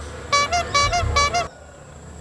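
A comic sound effect: four short horn-like toots at the same pitch, evenly spaced over about a second.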